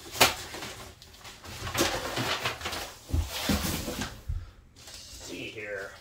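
Cardboard shipping box and its packing being torn and pushed aside by hand. There is a sharp snap about a quarter second in, then rustling and scraping, and dull thuds on the floor about three seconds in.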